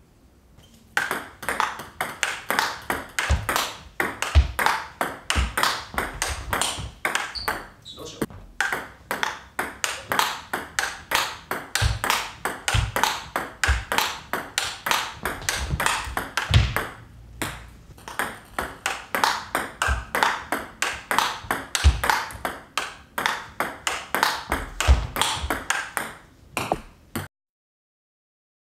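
Table tennis ball clicking off the bats and the table in a fast continuous rally, about four clicks a second, breaking off briefly twice. A few low thuds come in between, and the rally stops suddenly near the end.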